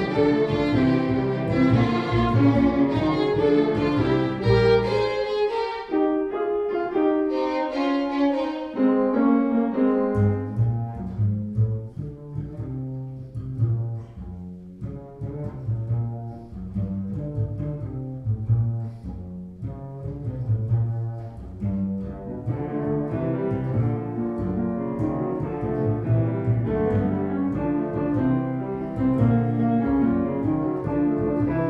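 A trio of violin, piano and pizzicato double bass playing a brisk, rambunctious tune marked at 148 beats a minute. The lowest bass notes drop out for about three seconds early on, the sound thins and grows quieter in the middle, and it fills out again over the last several seconds.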